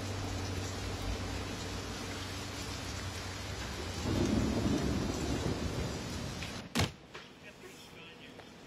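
Heavy rain falling steadily, with a low rumble of thunder swelling up about halfway through. Near the end comes a single sharp knock, and then the rain sound drops away to a much quieter room.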